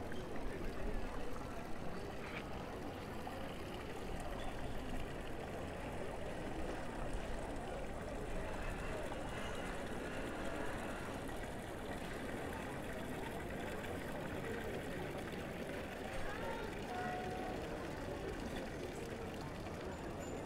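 Steady outdoor ambience of a busy square: water splashing from a stone fountain under indistinct voices of people nearby.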